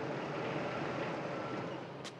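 A vehicle engine running steadily under a general outdoor background hum.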